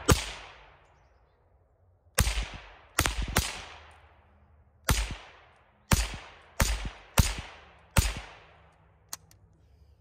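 Savage 64 semi-automatic .22 LR rifle firing nine shots at uneven intervals, with a pause of about two seconds after the first. Each sharp crack is followed by a short echoing decay. A faint click comes near the end.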